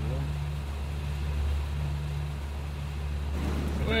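Speedboat engine running with a steady low hum.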